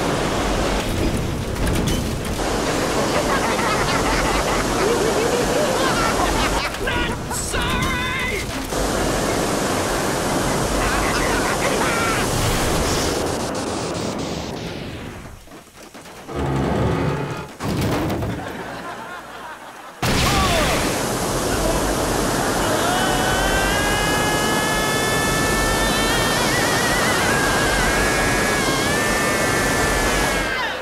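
Sound effect of a rocket engine firing with a loud hissing rush that winds down with a falling tone about 13 seconds in, sputters twice, then starts again abruptly and builds with a rising whistle. Music plays under it.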